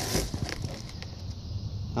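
A brief rustle of handling at the start as the cardboard box is turned close to the phone, then steady low outdoor background noise.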